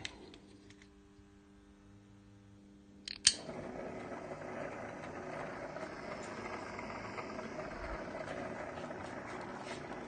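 A switch clicks about three seconds in, and a Belma rotating blue emergency beacon starts up, its motor running with a steady whirr.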